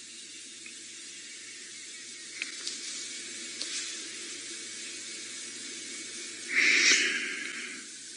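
Low, steady background hiss with a faint hum and a few faint ticks, then a short breathy rush of noise lasting under a second, about six and a half seconds in.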